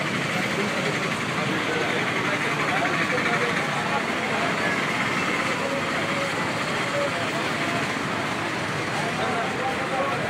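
Steady street noise on a wet road: passing traffic with indistinct voices of people around.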